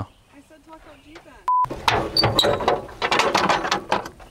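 A short, pure beep tone about one and a half seconds in, followed by about two seconds of rapid, dense mechanical clicking like a ratchet.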